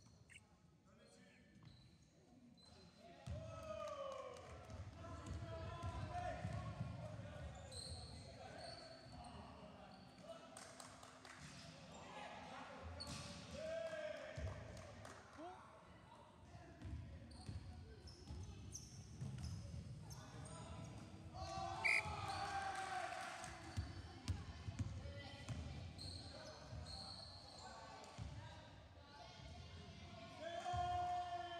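A basketball being dribbled and bounced on a wooden sports-hall floor during play, echoing in the large hall, with players calling out.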